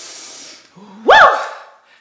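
A woman taking a long, airy breath in, then letting out a loud 'woo!' that swoops up in pitch and falls away, about a second in.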